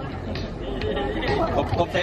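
Only speech: a man talking in Thai over a microphone, with chatter from the people around.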